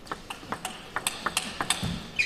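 Table tennis ball clicking off the rackets and the table in a fast rally, several sharp clicks a second.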